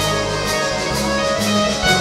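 Live band playing an instrumental passage of a pop song: keyboard, guitars and bass holding chords over a light beat, about two strokes a second.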